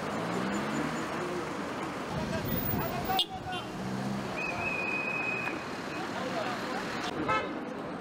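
Street traffic noise of cars running and passing, with a single high-pitched toot lasting about a second, roughly four and a half seconds in.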